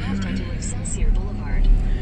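Road rumble inside a moving car's cabin: a steady low drone that swells about a second in, with faint talking in the background.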